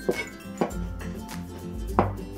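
Chinese cleaver chopping mushrooms on a cutting board: a few sharp strikes about every half second, the last one loudest, over background music.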